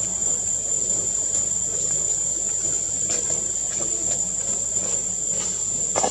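Insects droning in a continuous, steady high-pitched buzz, with a few faint clicks over it.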